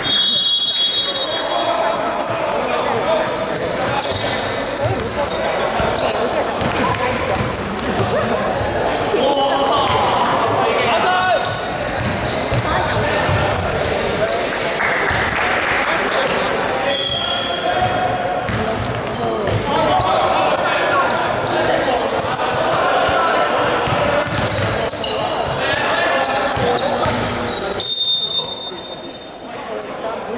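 Indoor basketball game: a basketball bouncing on a hardwood court, sneakers squeaking, and players' voices calling out, all echoing in a large hall.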